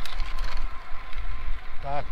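Wind buffeting a cheap wired clip-on lavalier microphone on a riding road cyclist, a steady low rumble over the hiss of the road bike's tyres on asphalt, with a few faint clicks in the first half second.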